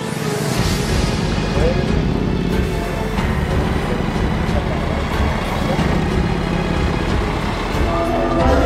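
Mercedes-Benz coach bus driving slowly past and turning away, its engine running in a steady low rumble with street noise around it; the sound rises to full level about half a second in.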